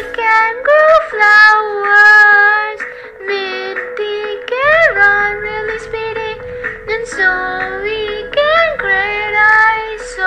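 A child singing a song over backing music, in a high voice whose notes slide up and down.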